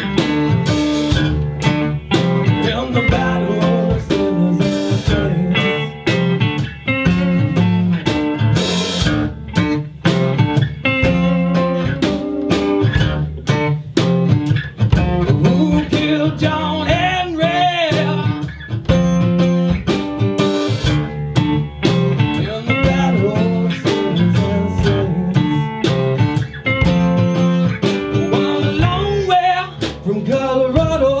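Live blues-rock band playing an instrumental passage: electric and acoustic guitars, bass guitar and drum kit, with a lead line bending up and down in pitch over a steady beat.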